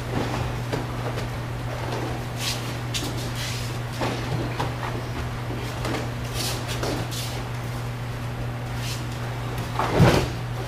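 Falls and rolls on aikido mats: scattered soft thuds, bare-foot steps and rustling of gi cloth as the uke is thrown and breaks his fall. The loudest thud comes at the very end, under a steady low hum.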